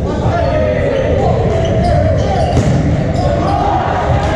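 Volleyball rally in a large gym: players' and spectators' voices ring around the hall, with thumps of the ball and sneakers on the hardwood court.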